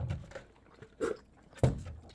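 Soft chewy candy being chewed, with small wet mouth sounds, and a brief louder sound near the end.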